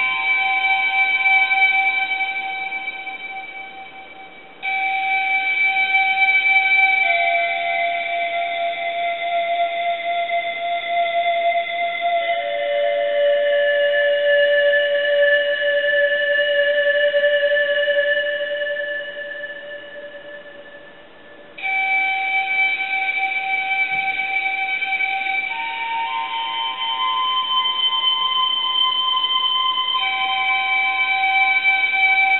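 Synthesized pan-flute chords from a Nexus² preset, long held notes that step to new pitches every few seconds. The sound fades down twice and each time comes back in suddenly with a new chord.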